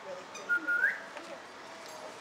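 A short, high whistle, about half a second long, held on one note and then rising at the end.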